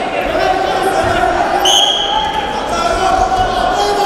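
A referee's whistle sounds once, a short steady high blast about halfway through. Around it are dull thumps of the wrestlers' bodies and feet on the mat, and raised voices.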